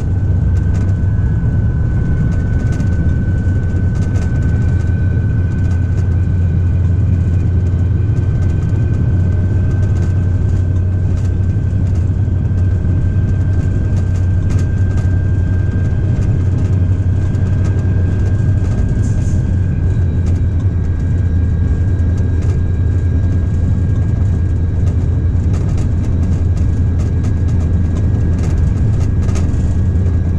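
Engine of a DB class 294 diesel-hydraulic shunting locomotive running steadily while under way, heard from inside the cab. The sound is a low drone with a steady high whine over it and scattered clicks.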